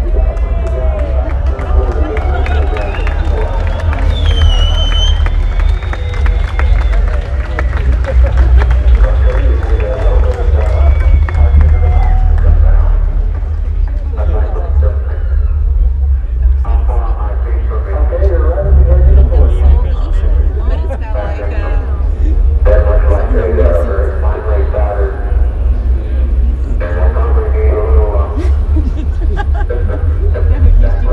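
Loudspeaker soundtrack of a video-mapping light show: a heavy, steady low rumble with music. An onlooking crowd chatters over it.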